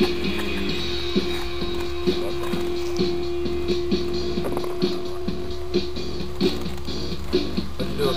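Background music with a steady beat, about two beats a second, and one long held note through most of the first part.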